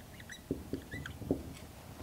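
Dry-erase marker squeaking on a whiteboard while writing: several short, high squeaks with a few soft strokes of the tip against the board.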